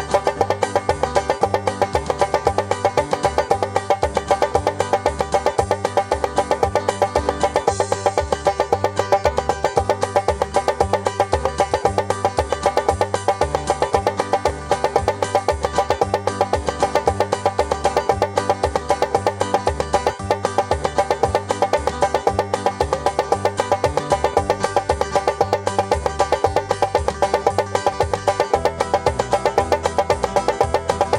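Five-string banjo playing a steady, fast forward roll with notebook paper woven through the strings. The paper mutes every note to a flat, very percussive, snare-drum-like click, over a Band-in-a-Box backing track of bass and chords. Near the end the backing switches to a minor chord, a programmed cue that it is almost time to change to the next roll.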